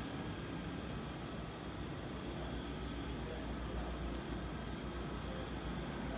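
Steady low room hum and hiss, with a faint rustle of cotton print fabric being handled and folded on a table.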